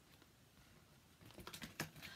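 Near silence, then a few faint, short clicks and rustles in the second half as a folded paper leaflet is handled.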